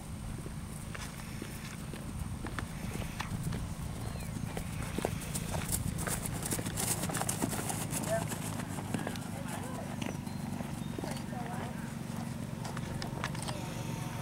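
Hoofbeats of a horse trotting on grass, with faint voices and a steady low rumble underneath.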